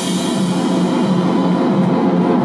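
Live rock trio playing loud: drum kit with cymbal wash over electric guitar and bass, the high cymbal sound thinning toward the end.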